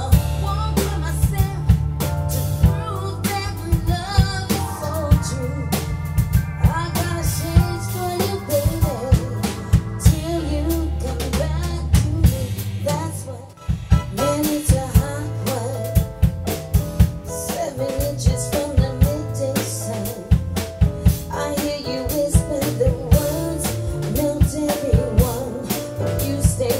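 Live R&B band playing: electric bass, drum kit with snare and kick, and a Kawai MP7SE stage piano, with a woman singing. The music briefly dips about halfway through.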